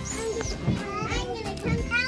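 Children's voices calling out at play, high-pitched and rising and falling, with no clear words.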